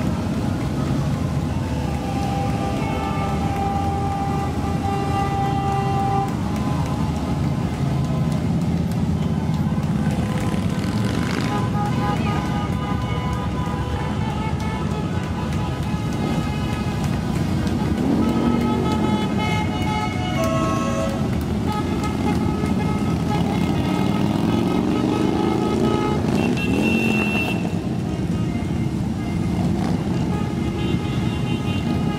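A steady stream of motorcycles riding past, their engines rumbling continuously, with revving rising in pitch about two-thirds of the way in and again near the end. Long, held tones sound over the engines.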